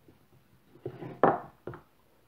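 Long kitchen knife pressed down through a slab of soft Turkish delight and knocking onto a wooden cutting board: a short cluster of three or so knocks starting about a second in, the middle one the loudest.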